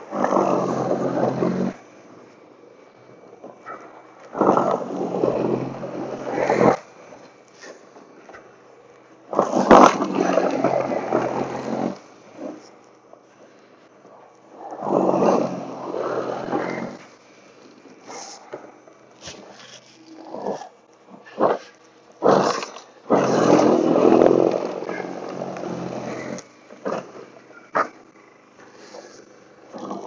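Toro Power Clear e21 60-volt battery snow blower, with a brushless motor and single-stage steel auger, running in repeated surges of two to three seconds as it is pushed into packed snow. There are quieter lulls between the surges.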